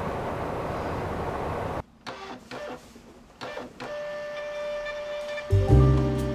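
A steady noisy rush cuts off about two seconds in, followed by short mechanical bursts from a label printer feeding out a strip of sticker labels. Background music comes in near the end, with a loud bass line in the last half second.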